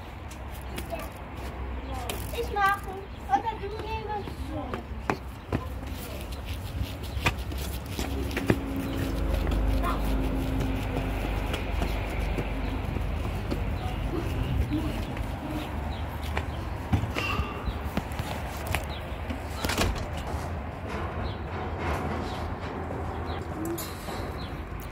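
Brief indistinct children's voices in the first few seconds. Then a pushchair's wheels roll over paving, a steady low rumble with scattered clicks.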